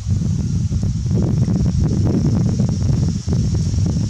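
Wind buffeting the microphone, a loud low rumble throughout, with a scatter of light clicks and crackles between about one and two and a half seconds in.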